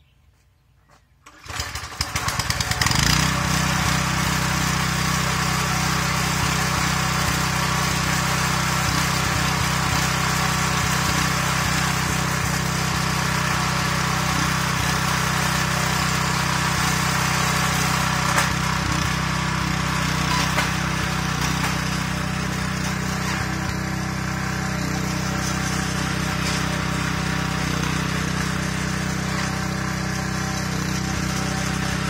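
Earthquake Victory rear-tine tiller's 196 cc Kohler single-cylinder engine being pull-started: a second and a half in it cranks briefly and catches at once, then runs steadily at idle, a little quieter about two-thirds of the way through.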